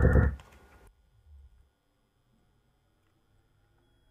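A muffled whooshing sweep-effect sample previewing from a music production program, its top edge slowly rising, cut off abruptly about a second in; a faint brief blip follows, then near silence.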